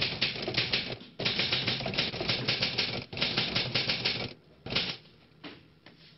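Rapid typewriter-like clattering clicks in runs of a second or two each, stopping a little after four seconds in, followed by a couple of short isolated bursts.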